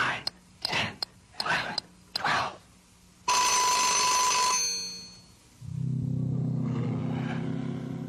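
Sound effects: a quick run of short swishes, then a bell rings for about a second, then a low steady buzzing drone starts near the end.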